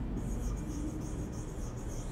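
Faint scratching of a pen writing on an interactive whiteboard, over a low steady room hum.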